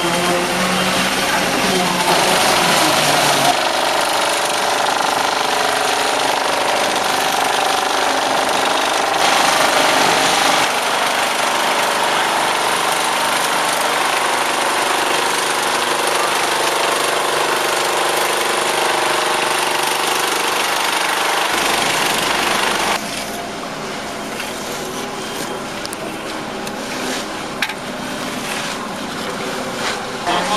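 Vibrating truss screed running on fresh concrete: the vibrator motors along the truss give a loud, steady mechanical drone that shifts abruptly a few times and drops somewhat quieter about three-quarters of the way through.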